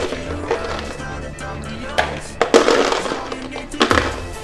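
Ice cubes clinking and clattering as they are tipped from a small cooler into a plastic food container, with a few sharp knocks about halfway through and again near the end. Background music plays throughout.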